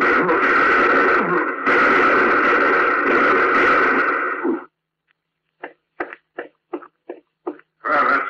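Radio-drama sound effects of Joe being shot down by the police. A loud, drawn-out cry in two stretches cuts off suddenly about four and a half seconds in. After a moment's silence comes a run of about nine short, sharp sounds, roughly four a second.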